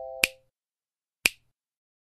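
Two finger snaps about a second apart, as the ringing of a chime dies away at the start.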